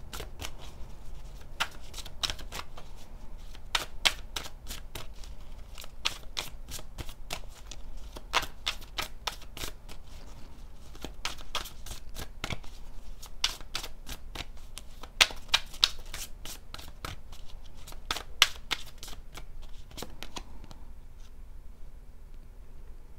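A tarot deck being shuffled by hand: a long, irregular run of sharp card snaps and slaps that stops about 20 seconds in.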